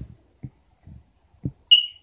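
A few soft low knocks, then near the end one short, high-pitched electronic beep, like a smoke-alarm chirp.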